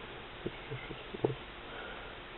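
Mostly quiet room tone with a few faint soft taps, about half a second in and just past a second, from a moped crankshaft and crankcase half being handled.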